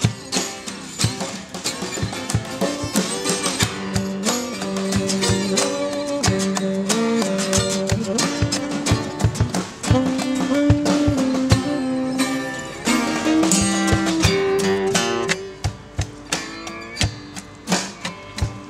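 Instrumental break of a blues-folk song: several acoustic guitars strumming a steady rhythm while a saxophone plays a solo line of held, bending notes. Near the end the saxophone drops out, leaving the strummed guitars.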